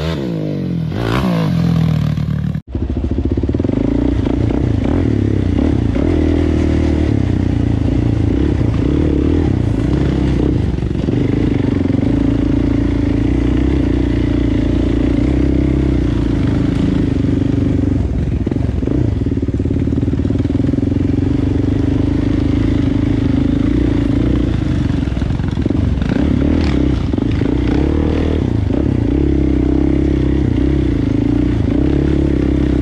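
ATV engine revving, its pitch swooping up and down as a quad slides across loose gravel. About two and a half seconds in there is an abrupt cut to a Suzuki quad's engine heard from the rider's seat, running at a fairly steady pitch with small rises and dips.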